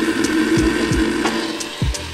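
Hamilton Beach countertop blender running steadily at speed, whirring as it blends a thick berry-and-yogurt smoothie. Background music with a deep kick-drum beat plays under it.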